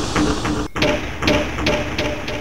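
Film-score percussion: a pitched drum struck in a quick, even beat of about five strokes a second. After a brief break about two-thirds of a second in, the beat goes on at a higher pitch.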